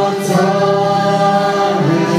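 Choir singing long held notes, the chord shifting about a quarter second in and again near the end.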